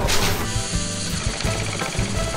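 Banknote counting machine whirring as it feeds a stack of notes through, under background music with a steady beat.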